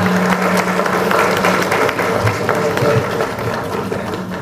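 Audience applauding: dense clapping that thins out near the end, over a steady low hum.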